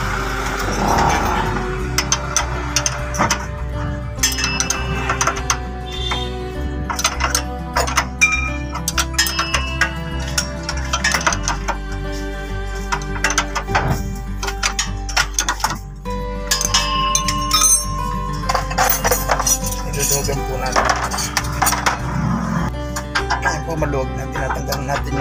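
A steel wrench clinking against the leaf-spring shackle bolt nut as it is loosened: many quick, irregular metallic clicks over background music.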